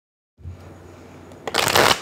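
Tarot cards being riffle-shuffled by hand: a faint rustle of the cards, then a quick, loud fluttering burst as the two halves of the deck are riffled together near the end.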